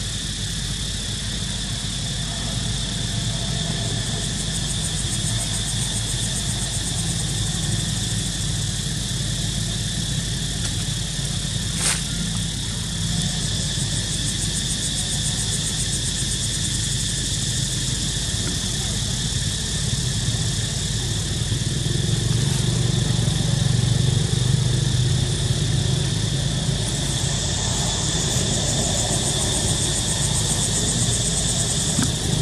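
A steady low drone like an engine running, with steady high-pitched tones above it. The drone grows a little louder about two-thirds of the way through, and there is a single sharp click around the middle.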